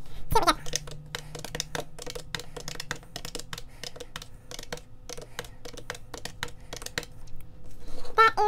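Plastic keys of a green desktop calculator being pressed in a quick, irregular run of clicks while a column of figures is added up.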